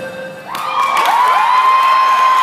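Dance music ends right at the start, and about half a second in an audience starts cheering. One voice gives a long high-pitched yell that rises and then holds over the crowd.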